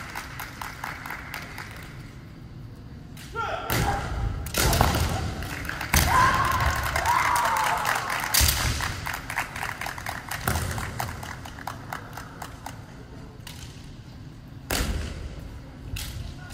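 Kendo fencers sparring: sharp knocks of bamboo shinai and foot stamps on the wooden gym floor, with shouted kiai, echoing in the hall. It starts quiet, the strikes and shouts come from about three seconds in, bunch up in the middle, and one more loud knock falls near the end.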